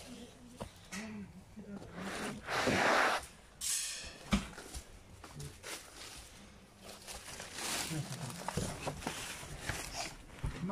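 Rustling and scraping of brambles, ivy and clothing as someone pushes through undergrowth with the camera, in irregular surges, the loudest about three seconds in. Faint voices can be heard at times.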